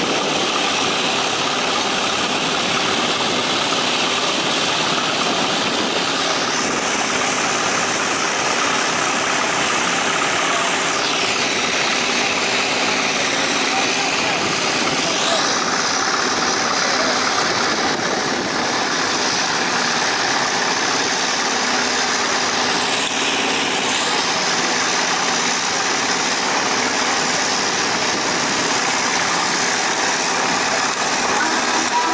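Old engines running steadily, with a crowd's voices in the background.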